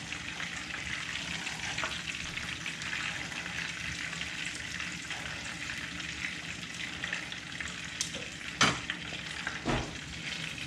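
Breaded clams frying in hot vegetable oil in a pan: a steady sizzling and crackling. A couple of sharp clicks come near the end.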